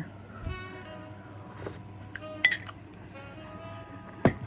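Soft background music with sustained tones, over which a metal spoon clinks sharply against a bowl a few times, loudest about halfway through.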